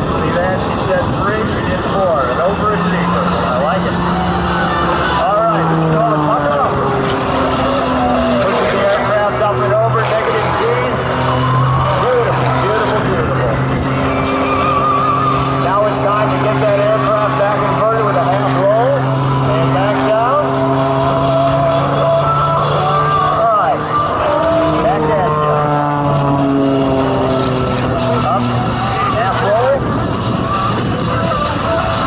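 Aerobatic monoplane's piston engine and propeller running hard in flight, its steady drone stepping and gliding up and down in pitch as the aircraft manoeuvres. Spectators' voices chatter close by.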